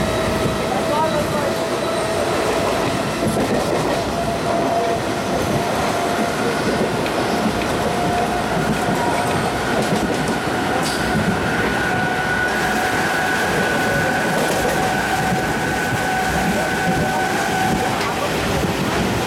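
Mumbai suburban electric train running on the rails, heard from inside the open-mesh luggage compartment: a steady rumble and rattle of wheels and carriage with a high whine that rises slightly in pitch.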